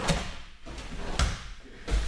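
A body hitting a gym mat twice, about a second apart, as a person tumbles through rolls and breakfalls.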